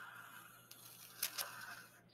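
Felt tip of a black permanent marker drawing a line across sketchbook paper: a faint, steady rubbing, with two short sharp sounds a little over a second in.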